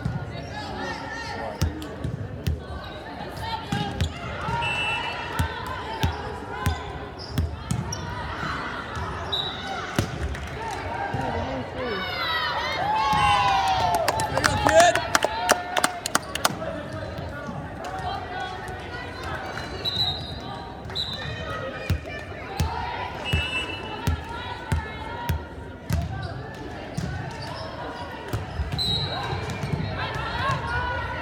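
Indoor volleyball play in a large gym: the ball is struck and slapped, sneakers squeak on the hardwood floor, and players call out. About halfway through comes a louder burst of many voices shouting and cheering together.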